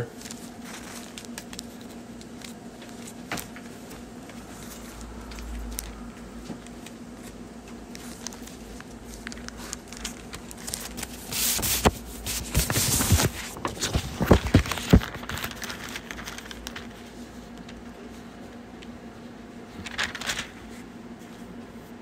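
Pages of a Bible being flipped and rustled while someone looks up a passage, in a burst of quick rustles around the middle and once more near the end, over a steady low hum.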